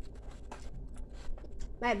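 Faint scratchy rustling with small scattered clicks, then a child's voice starts near the end.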